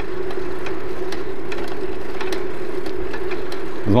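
Riding noise from a moving bicycle: a steady hum at one pitch over an even rushing noise, with a few faint ticks.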